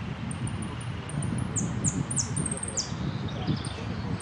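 Caged jilguero (saffron finch) singing a contest song: a run of thin, very high chirps, then four or five sharp notes sweeping steeply downward, with a steady low rumble of wind and background beneath.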